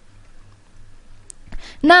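A quiet pause with only a faint, steady low hum, then speech starts near the end.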